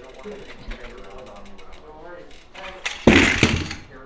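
Mountain bike's rear freehub ticking rapidly as the bike is wheeled along, then a sudden loud burst of noise about three seconds in, under a second long.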